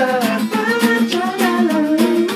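Acoustic guitars strummed in a steady rhythm under male voices singing a held, gliding melody.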